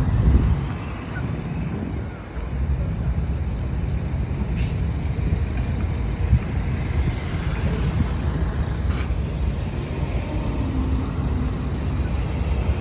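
Steady low rumble of vehicle engines at a car-ferry landing as cars drive off the ferry, with wind on the microphone. A single sharp click comes about four and a half seconds in.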